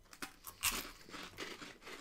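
Close-miked crunching of freeze-dried sour gummy worms as they are bitten and chewed: a string of irregular crisp crunches, the loudest about two-thirds of a second in.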